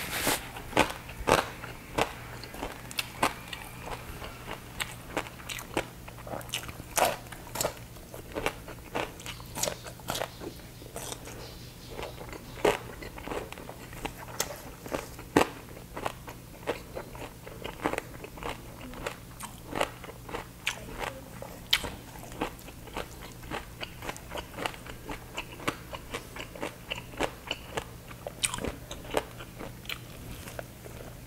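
Close-miked chewing and biting of super crispy baked pork belly, the crackling skin giving a steady run of sharp crunches, about one to two a second.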